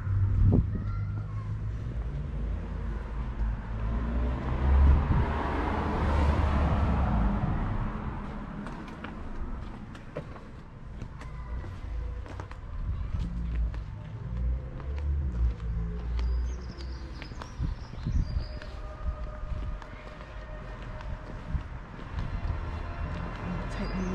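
Outdoor street ambience with a steady low rumble, and a vehicle passing that swells and fades about four to eight seconds in. Light footsteps on a paved path.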